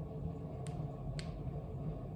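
Room tone: a steady low hum, with two faint ticks about a second apart.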